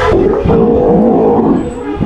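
Young Steller sea lion calling: one long, low call lasting about a second and a half.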